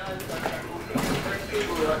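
Indistinct speech, with a couple of light knocks about a second in.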